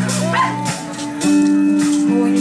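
A live band playing, guitars and drums behind a singer: a short rising swoop of pitch about half a second in, then a long held note.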